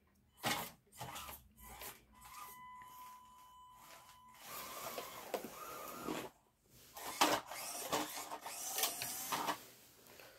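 Panda Hobby Tetra K1 RC crawler's small electric motor and gears whirring in stop-start bursts as it drives over carpet, with a steady thin whine for about two seconds near the start.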